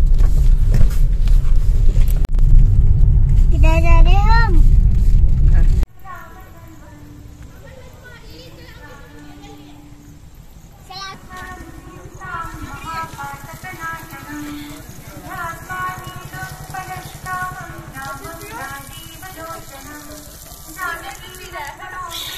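Loud low rumble of a car driving, heard from inside the cabin, with a brief rising-and-falling tone about four seconds in. The rumble cuts off suddenly about six seconds in and gives way to quieter background music.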